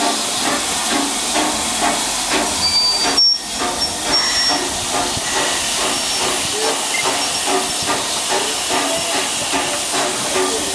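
LMS Princess Royal class 4-6-2 steam locomotive 6201 Princess Elizabeth standing with steam hissing steadily as it escapes around the cylinders. The hiss dips briefly a little over three seconds in.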